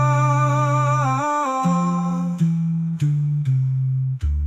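A cappella voices humming in harmony without words: a held upper note over a low bass voice that steps from note to note. The upper note wavers and fades out about a second and a half in, leaving the bass line with a few crisp note onsets.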